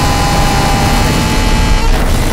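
Harsh noise music: a loud, dense wall of distorted noise filling the whole range from deep rumble to hiss, with a thin steady tone in it that fades about halfway through.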